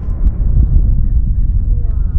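A person laughing over a continuous low rumble.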